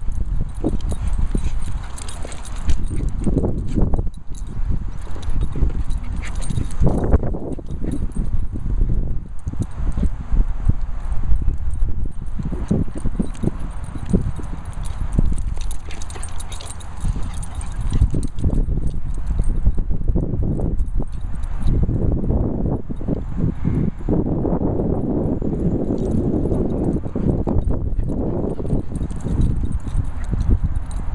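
Two dogs, a Weimaraner and a Poochon, playing on grass: scuffling and dog noises with frequent short thumps over a continuous low rumble.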